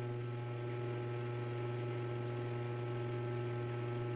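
Steady low electrical hum, with fainter steady higher tones above it, unchanging throughout.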